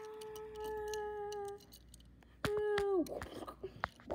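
A person's voice holding a long, steady hummed note that stops about a second and a half in. After a short pause comes a second, shorter held note that drops in pitch at its end, followed by light clicks and handling rustle.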